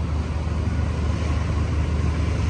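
Honda scooter's small engine idling steadily, a continuous low hum with a rapid even pulse.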